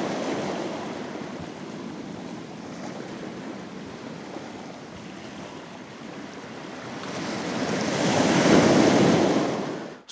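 Sea waves washing onto a chalk-pebble beach. The surf eases after the start and swells again to its loudest about eight to nine seconds in, then cuts off suddenly.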